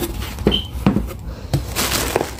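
Items being handled in a cardboard delivery box: several sharp knocks of packages against the box and each other, then plastic packaging rustling near the end.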